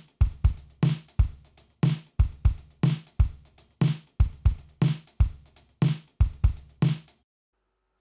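Logic Pro 'Liverpool' acoustic drum kit playing back a programmed step-sequencer groove at 120 BPM: kick and snare under a steady run of closed hi-hat hits. The pattern stops about seven seconds in.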